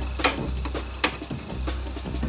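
Background music with a steady low beat, over which small side cutters snip sharply twice, about a second apart, cutting a leaked motherboard battery's leads.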